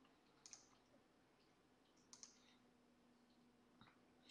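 Near silence: faint room tone with a few soft computer mouse clicks, the clearest about half a second and two seconds in.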